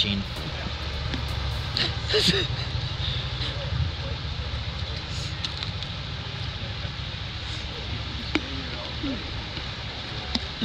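Water pouring over a low, curved concrete dam spillway into a churning pool below, a steady rushing noise with a deep rumble underneath.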